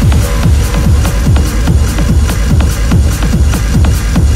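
Hard techno playing in a DJ mix: a heavy kick drum, each beat dropping in pitch, about two and a half beats a second, under hi-hats and dense, noisy upper layers.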